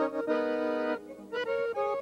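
Piano accordion playing: a chord held for most of the first second, then a quick run of short notes.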